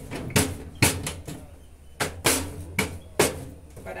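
Wooden rolling pin rolling out dough on a stainless steel counter, knocking against the metal in about six sharp, irregular thumps.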